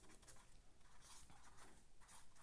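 Faint sound of a pen writing words on a sheet of paper.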